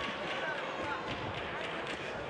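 Ringside sound of a live boxing bout: scattered sharp slaps and knocks from the boxers' footwork and gloves, over a steady hum of crowd voices and shouts.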